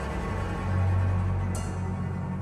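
Background film music: a low sustained bass drone that swells about half a second in, with a short bright high sound near the end.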